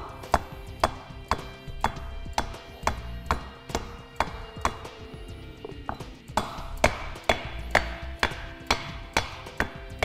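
Hammer tapping a wooden block about twice a second, a steady run of light knocks, driving a grease seal into the back of a trailer hub-and-drum. Background music plays under the taps.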